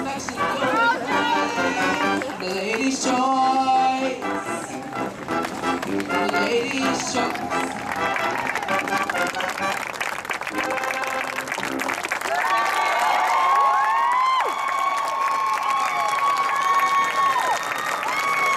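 A live marching band plays the last bars of its show, which end about seven seconds in. Then a stadium crowd applauds and cheers, with long high shouts and whistles over the clapping in the second half.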